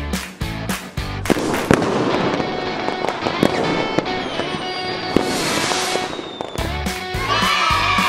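Upbeat intro music with a steady beat, cut about a second in by a fireworks sound effect: sharp cracks and a dense crackle that lasts about five seconds. The music's beat comes back near the end.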